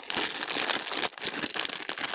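Clear plastic poly bag crinkling and rustling as hands work a folded football jersey out of it, a dense run of crackles with a short lull about a second in.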